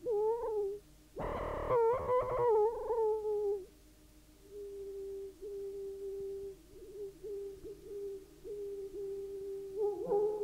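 Electronic music: a wavering, theremin-like synthesizer tone that bends in pitch, cut by a loud noisy burst about a second in. After a short lull, the tone settles into a steadier held note with small warbles.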